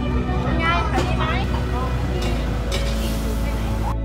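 Background music of steady held tones, with a small child laughing and squealing over it in the first second or two. The live sound cuts off suddenly just before the end, leaving only the music.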